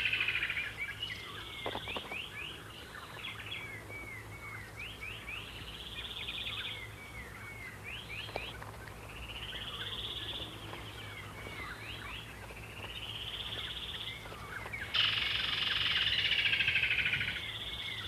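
Woodland kingfisher calls: short trilled phrases repeated every second or two. From about fifteen seconds in there is a louder, denser stretch of calling.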